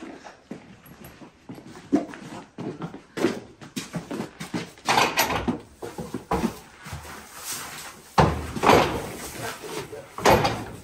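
A pony's hooves clopping on a concrete barn floor, mixed with knocks and scuffs from a plastic bucket and hay being handled, in a series of short irregular knocks, with a louder burst of noise near the end.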